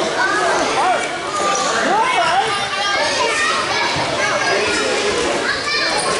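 Many children's voices chattering and calling out over one another, a steady babble of overlapping high voices.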